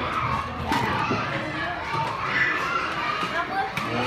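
A roomful of young children talking at once, many small voices overlapping into an indistinct chatter.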